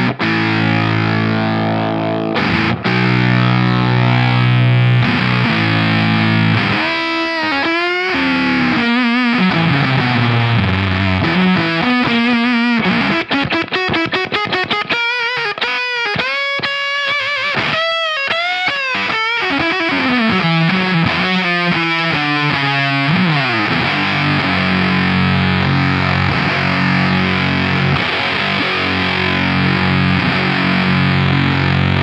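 Electric guitar played through the Irvine's Fuzz pedal into a Marshall-style Suhr SL68 amp: an aggressive, ripping fuzz tone. Held distorted chords open and close the passage, with a single-note lead line full of string bends and vibrato in the middle.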